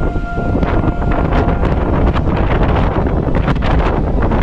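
Strong wind buffeting the camera microphone: a loud, steady low rumble broken by irregular gusts.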